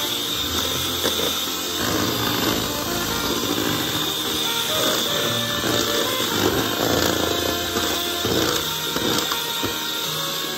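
Betty Crocker 6-speed electric hand mixer running steadily with a high motor whine, its beaters churning thick cake batter. Background music plays over it.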